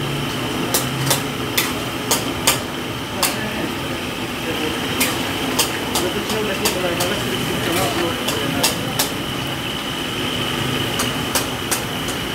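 Long metal tongs clacking against steel woks as cooks toss food over the stoves: sharp metallic clicks at an irregular pace, one to three a second, over steady kitchen noise.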